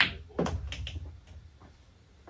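Sharp click of the cue ball striking the six ball on a stun shot. About half a second later comes a knock and a low rumble with a few lighter clicks as the six drops into a pocket, fading after about a second.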